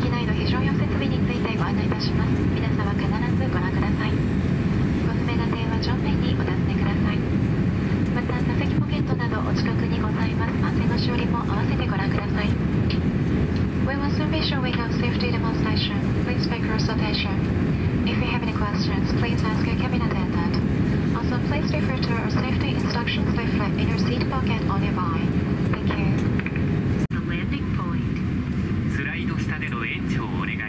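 Cabin crew PA announcement spoken over the steady low hum of an Airbus A350-900 cabin at the gate. A steady tone in the hum cuts off suddenly about 27 seconds in.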